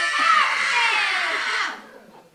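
A newborn baby crying in high, rising-and-falling wails that cut off sharply near the end, the cry that announces the birth after the labour.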